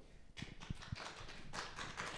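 Light applause from a small audience, starting about half a second in.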